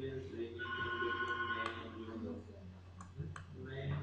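Faint, muffled voices over a steady low electrical hum. About half a second in, an electronic tone like a telephone ring sounds at several steady pitches for about a second, then cuts off sharply. A few sharp clicks come near the end.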